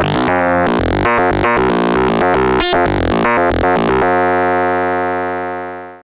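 Serge Paperface modular synthesizer: the NTO oscillator, randomly sequenced by the TKB, played through the Wave Multipliers, giving a fast run of stepped notes with shifting, buzzy timbre. About four seconds in it settles on one held note rich in overtones, which fades out.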